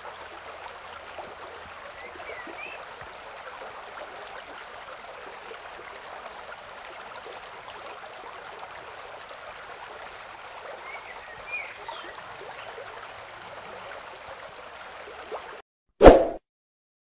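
Steady rush of a small stream of running water, with a couple of short high chirps, once a few seconds in and again later; the sound stops abruptly near the end.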